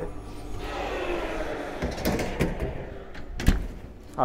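A few sharp knocks and clunks, the loudest about three and a half seconds in, over faint voices and kitchen room noise.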